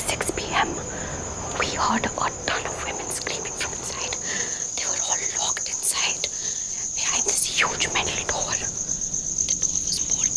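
Crickets chirping in a steady, high, pulsing trill.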